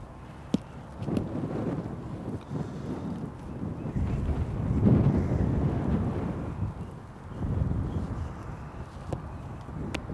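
Wind buffeting the microphone in gusts, a low rumble that swells to its loudest about halfway through. A few short sharp clicks sound near the start and again near the end.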